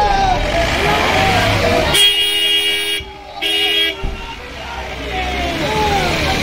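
A vehicle horn sounds twice, a steady two-note blast of about a second and then a shorter one half a second later, over crowd voices and street traffic.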